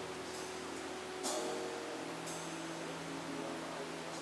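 Quiet band music between songs: steady held notes ring on under three light, bright hits about a second apart.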